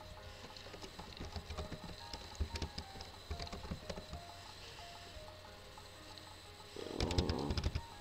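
Computer keyboard typing: scattered, irregular key clicks as a word is typed.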